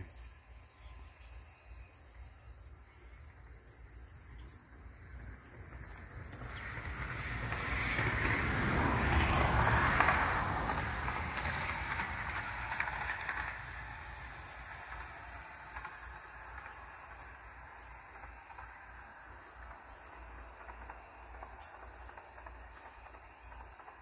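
Crickets chirping steadily in a fast, even pulse. Near the middle a vehicle passing on the road swells up, is loudest about ten seconds in, and fades away.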